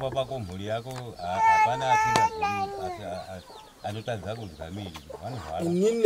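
A man talking in a low voice, with a rooster crowing once over him about a second and a half in: one long held call that drops away at the end.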